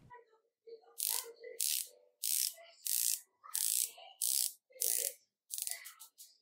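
Ratcheting dive-watch bezel of a San Martin BB58 homage being turned by hand in short flicks: nine quick runs of crisp clicks, about one every two-thirds of a second.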